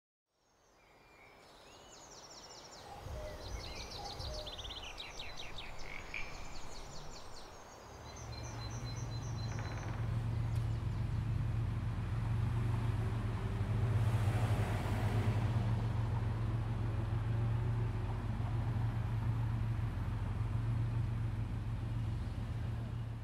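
Outdoor ambience fading in from silence: small birds chirping and trilling for the first several seconds, then a steady low drone sets in about eight seconds in and carries on.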